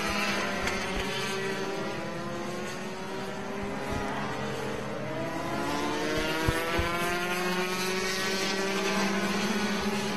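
Racing karts' two-stroke Rotax engines buzzing as several karts pass close together. Their pitch drops over the first few seconds, then climbs steadily as they accelerate.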